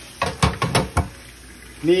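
A quick cluster of about five knocks and clatters of cookware in a stainless steel sink, within the first second, as a pot is handled and set down upside down on a colander and pot lid.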